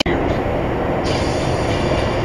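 Steady rumble of road and engine noise inside a vehicle cruising at about 53 mph on a motorway. It cuts in abruptly at the start.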